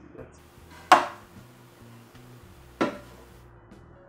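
Two sharp knocks on the wooden shelf boards, about two seconds apart, the first the louder, over faint steady background music.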